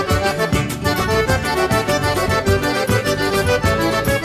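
Instrumental forró passage led by accordion over a steady, even percussion beat, with no singing.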